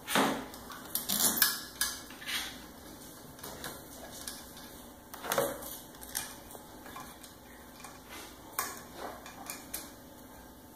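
Irregular metallic clinks and knocks as a Holset VGT turbo actuator is handled and refitted on a metal workbench. The sharpest knocks come in a cluster over the first two seconds, with single ones in the middle and a few more near the end.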